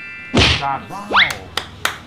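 Comic sound effects: a single thunk about a third of a second in, then a quick rising whistle-like glide and a few sharp clicks.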